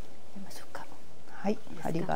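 Soft whispered speech, turning into a quiet speaking voice near the end.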